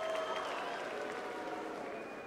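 Large crowd applauding steadily, with scattered voices calling out, easing off slightly near the end.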